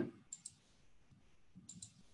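Two quick double clicks of a computer mouse, about a second and a half apart, faint over near silence.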